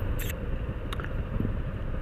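Yamaha Fazer 250 motorcycle's single-cylinder engine idling while stopped in traffic: a steady low rumble with the hum of the surrounding traffic, and a couple of faint clicks.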